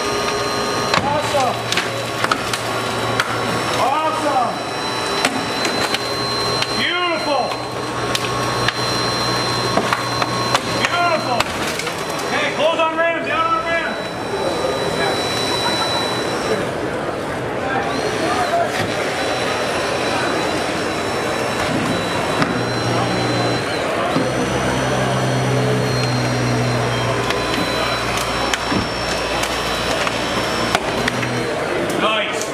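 Hydraulic rescue tools, a spreader and ram, working on a Tesla Model S body: a steady motor hum that starts and stops, with creaking and cracking as the door and pillar are forced apart.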